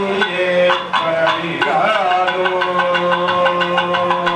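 Group of priests chanting Sanskrit mantras together, with long held notes and light rapid strikes beneath.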